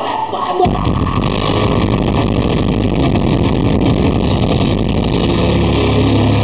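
Metal band playing live, a dense wall of distorted guitars and fast drumming, overloaded in the recording so it blurs into a roar; the low end fills in about half a second in.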